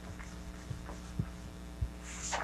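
A cloth eraser wiping a whiteboard, heard as faint short rubbing swishes and a few soft low thumps, over a steady electrical hum.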